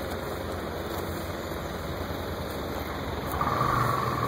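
JAP V-twin engine of a vintage Morgan three-wheeler idling with a steady, rapid low pulsing. A steady higher tone joins near the end.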